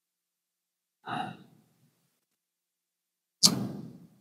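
A man's breath sounds in a pause before speaking: a short sigh about a second in and a sharp intake of breath near the end, with silence between.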